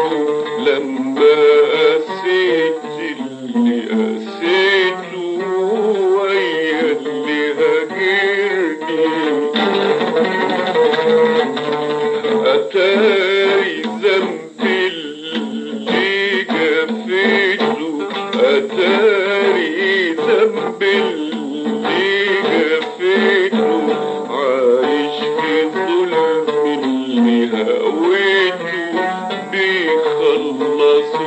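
An oud played with a man singing an Arabic song in maqam nahawand, the voice wavering and ornamented over the plucked strings.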